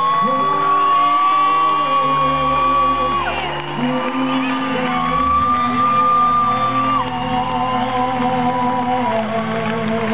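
Live rock band playing, with two long held high notes over sustained chords, the first about three seconds, the second about two.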